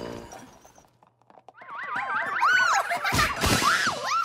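Cartoon soundtrack: wobbling, warbling pitched glides layered over music, with a loud crash-like burst about three seconds in.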